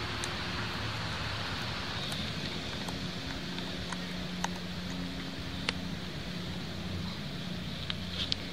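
Steady background hiss with a faint low hum, broken by a few light clicks as the red leads of a solar charge controller are handled and plugged into a battery.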